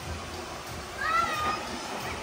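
A short, high-pitched cry about a second in, lasting about half a second and rising then falling in pitch, over a low rumble and faint voices.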